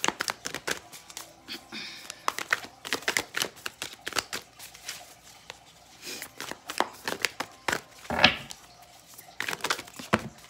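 A tarot deck being shuffled by hand: a run of quick, irregular card slaps and flicks, with one louder swish about eight seconds in.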